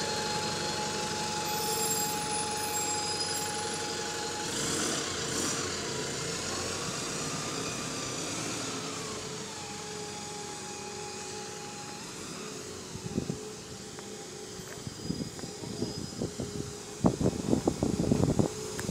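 Double-decker diesel bus pulling away, its drivetrain whining steadily. The whine rises in pitch about four seconds in and drops back about five seconds later, then fades as the bus draws away. A few short knocks come near the end.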